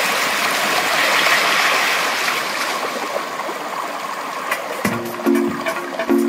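Rushing, splashing water, a steady hiss that gradually thins out. About five seconds in, music starts with short repeated chords.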